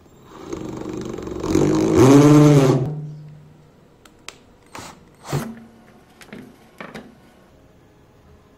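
Cordless drill motor running as a twist bit bores through a plastic junction box, its pitch rising as it speeds up and falling as it winds down to a stop about three seconds in. A few sharp clicks and knocks follow.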